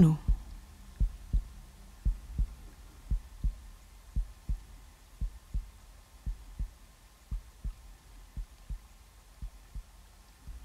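Recorded heartbeat: slow, steady lub-dub pairs of soft low thumps, about one beat a second, growing slightly softer, over a faint low hum.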